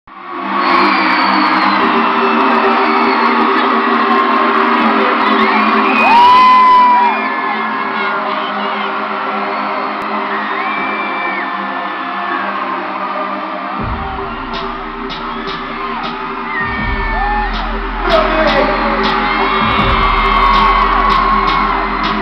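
Arena crowd screaming and cheering over a held synth chord from the PA system. A deep bass note comes in about two-thirds of the way through.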